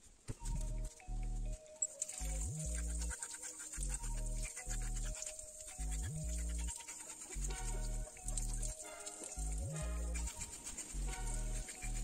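Background music: an electronic track with a repeating bass line of held notes in even blocks, some ending in short upward glides.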